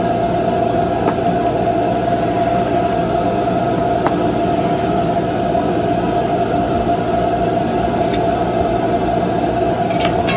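A steady machine drone inside a food trailer, holding one constant mid-pitched whine without any change, with a few faint clicks from items being handled at the counter.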